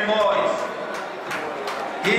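A person's voice talking, fading out about half a second in and leaving a quieter background stretch.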